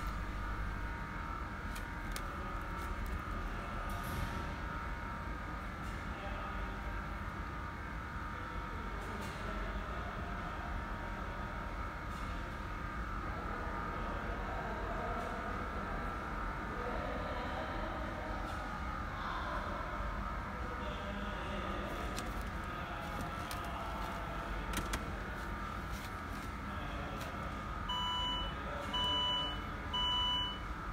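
Steady low background hum with faint steady tones. About two seconds before the end, a run of short, evenly spaced electronic beeps starts, a little over one a second.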